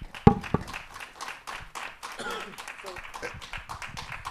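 Audience clapping after a speaker finishes. A sharp thump about a quarter second in, the loudest sound, as a live handheld microphone is set down on a table.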